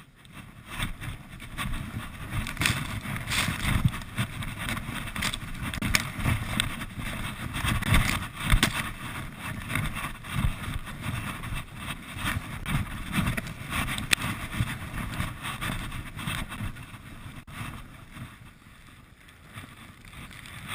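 Wind buffeting an action camera's microphone as a skier descends through powder snow, with the skis hissing through the snow and a few sharp knocks. The rushing is a little quieter near the end.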